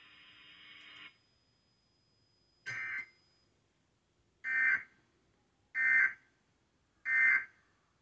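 Emergency Alert System end-of-message data bursts from a TV speaker: short, harsh digital squawks, a quieter one near the start and then three louder ones a little over a second apart, signalling the end of the alert. Before them, a faint steady hiss stops about a second in.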